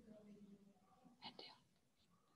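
Near silence with faint, indistinct speech, a short breathy burst of it a little past the middle.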